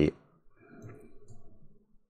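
Quiet computer mouse clicks as cells of an on-screen puzzle grid are selected, under a faint low murmur.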